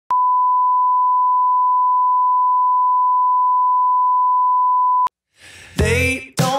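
Steady single-pitch test tone, the 1 kHz line-up tone that accompanies colour bars, which cuts off sharply about five seconds in. After a short silence, music starts just before the end.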